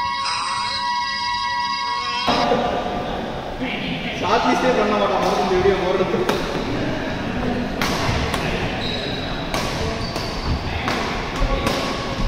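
A short burst of held electronic tones, then a badminton doubles rally in a large hall: sharp racket strikes on the shuttlecock about a second apart, with players' voices.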